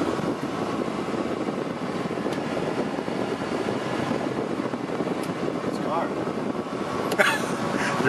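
Steady running noise of a classic car heard from inside the cabin, a constant even rumble and hiss with no changes in speed.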